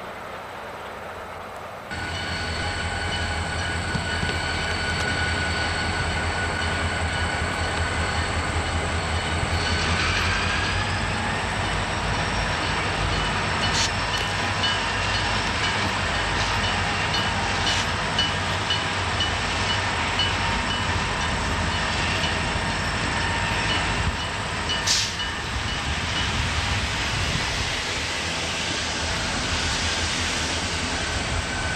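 SOO Line diesel freight train passing: a steady low engine rumble with a thin high whine over it, and a few sharp clicks. The sound gets louder about two seconds in.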